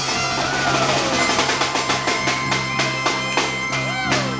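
Live band music: a sustained, droning chord with a regular drum beat coming in about a second in, and a few sliding notes over the top.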